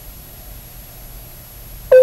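Faint steady background hiss; just before the end a loud, steady beep-like tone starts abruptly.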